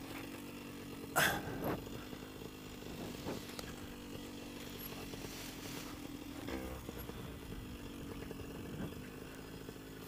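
Flat Top paramotor engine idling steadily at low throttle while the wing is pulled up overhead. A brief loud noise about a second in.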